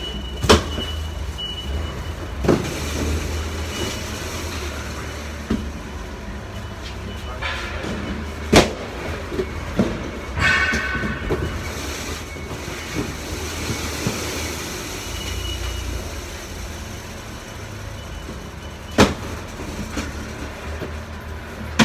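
Cardboard boxes being handled on a roller conveyor over a steady low rumble of warehouse noise, with a few sharp knocks as boxes are set down and pushed, the loudest about half a second in, twice more in the first half, and once near the end.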